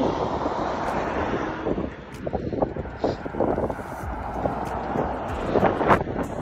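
Wind buffeting the phone's microphone: a steady, rumbling rush of wind noise.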